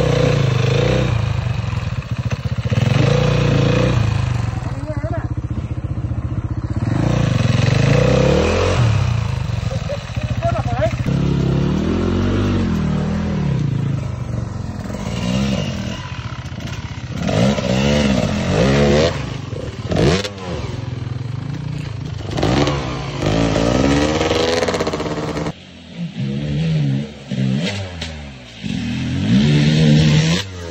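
Off-road motorcycle engines revving up and down repeatedly as the bikes are worked slowly through deep mud, the engine note climbing and dropping every second or two. Near the end a bike surges with a burst of throttle as it splashes through a stream ford.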